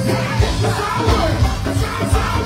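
Live go-go band music: drums and percussion keeping a steady beat, with a shouted vocal over it.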